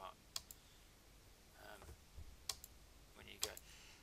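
Faint room tone with three sharp, isolated clicks: about half a second in, about two and a half seconds in, and near the end. A brief low murmur from a voice comes in between.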